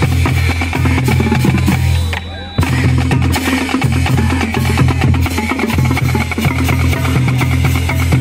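High school marching band playing a stand tune: low brass with sousaphones holding a bass line over a drumline of snares, tenor drums and bass drums. The band drops out briefly about two seconds in, then comes back in together.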